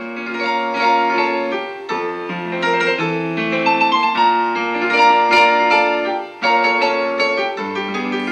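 Instrumental piano music: a melody over held notes, with a short break about six seconds in.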